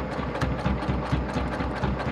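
Domestic electric sewing machine running and stitching, with a steady rhythm of about five beats a second, sewing through several layers of folded fabric.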